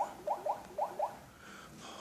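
Samsung Galaxy Note 2's touch-feedback sound: five short rising blips within about a second, as the Android version entry is tapped repeatedly to bring up the KitKat version screen.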